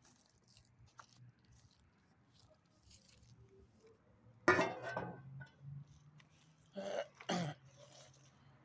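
A man coughing: one loud cough about halfway through, then two shorter coughs close together near the end.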